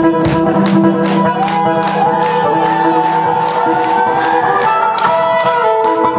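Live blues band music: a steady drum beat under held lead notes, with one long note sliding upward in pitch in the middle.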